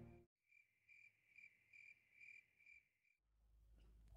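Faint cricket chirping, an even, high-pitched pulsed chirp repeating about two to three times a second, cutting off suddenly about three seconds in.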